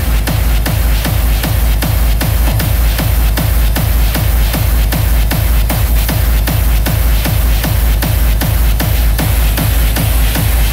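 Hardstyle dance music from a live DJ set. The heavy, distorted kick drum comes back in right at the start and pounds about two and a half times a second, each stroke dropping in pitch, under dense synth layers.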